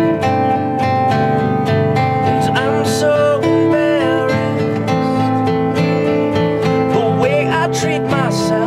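Acoustic guitars strumming chords in a song's instrumental opening, played live, with a few sliding, bending lead notes over the top.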